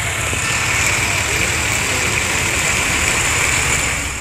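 Steady traffic noise on a rain-wet street: truck and car engines running as a low rumble under a constant hiss.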